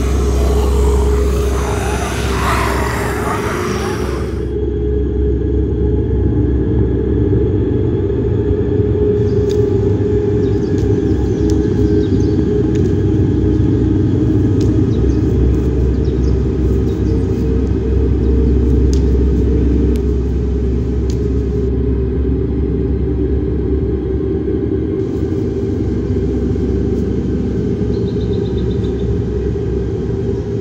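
Loud, steady low rumbling drone of a horror-film sound bed, with a brighter, noisier layer over it for the first four seconds before all but the low end cuts off sharply.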